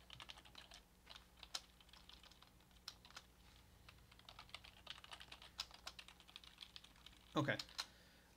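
Computer keyboard typing: an irregular run of faint key clicks as code is entered.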